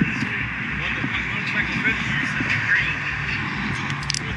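Steady outdoor background noise with a low, uneven rumble of wind on the microphone and faint, indistinct voices.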